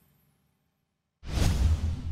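The last of the outro music fades away, and after about a second of near silence a sudden whoosh sound effect with a deep rumble comes in, lasting about a second before cutting off abruptly.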